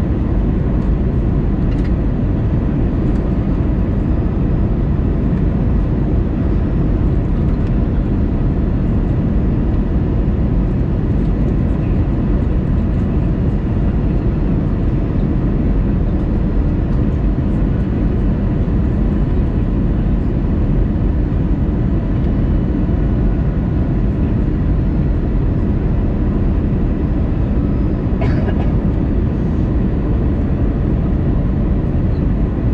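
Steady cabin noise inside an Airbus A320-200 in flight: a deep, even rumble of engines and airflow with faint thin whine tones above it. There is a faint click near the end.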